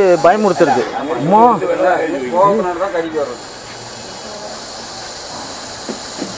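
A snake hissing, a steady hiss that stands alone for the last few seconds after a person's voice in the first half.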